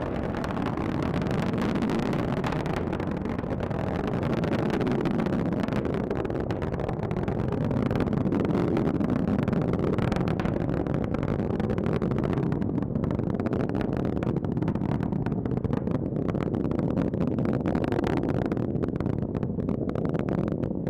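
Falcon 9 first stage, its nine Merlin 1D engines firing during ascent, heard from the ground as a steady, loud, crackling rumble.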